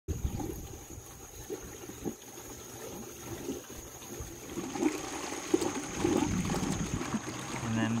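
Liquid gurgling and bubbling in a homemade vortex brewer as air enters and the water circulates through its pipe loop; the gurgling is irregular and gets busier about halfway through, with a faint steady high whine behind it.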